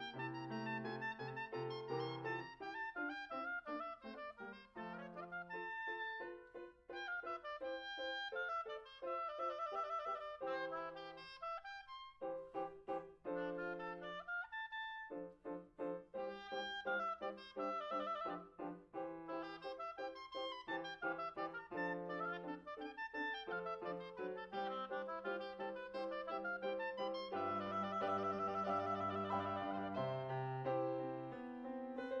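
A woodwind instrument playing fast running melodic passages in a classical piece, with piano accompaniment underneath; the music briefly thins out about midway and is fullest near the end.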